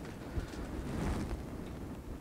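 Steady low room noise in a pause between spoken sentences: a faint, even hum and hiss with no distinct events.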